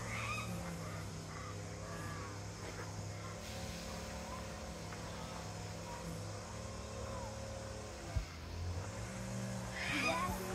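Steady low hum of a running motor or engine, like a vehicle idling, its pitch stepping slightly once or twice, with a soft low bump about eight seconds in.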